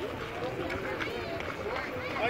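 Background voices: several people talking at once, no single speaker in front.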